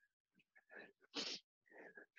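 Faint, quick breaths from a man working hard through mountain climbers, in short puffs about every half second, with one sharp exhale about a second in.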